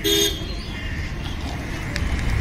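A short vehicle horn toot right at the start, then steady street traffic noise with a low rumble.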